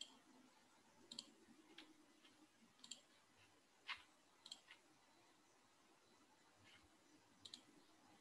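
Near silence with faint, irregular clicks from someone working at a computer, about one a second, several in quick pairs.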